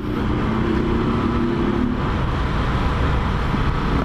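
Motorcycle engine running as the bike rides along a city street, with steady road and wind noise; the engine note fades about halfway through.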